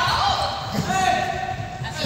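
Several people shouting and calling out during a running ball game in a large sports hall, over the repeated dull thuds of running feet and a bouncing ball on the floor.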